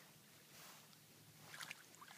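Faint sloshing of shallow water in an inflatable kiddie pool as a toddler moves through it, with a few small splashes in the last half second.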